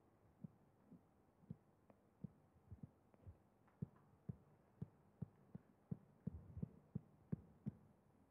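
Near silence broken by soft, low thumps, about two a second, getting louder and more regular in the second half.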